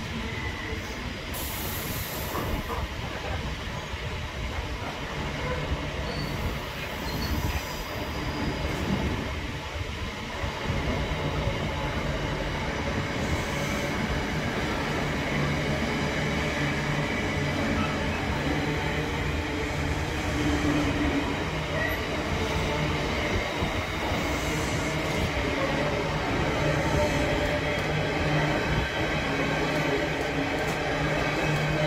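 Container wagons of a long intermodal freight train rolling past at close range, a steady rail rolling noise that grows a little louder about a third of the way through.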